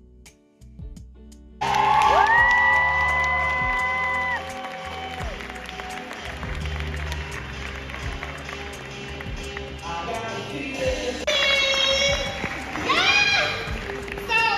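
Live music enters loudly about a second and a half in and holds a long chord of several notes that ends about four seconds in. Audience applause and cheering follow in a large hall over lighter music, with shouts and whoops near the end.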